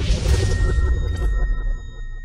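Logo intro sound effect: a rushing whoosh over a deep rumble, then a high ringing shimmer of several steady tones that fades away.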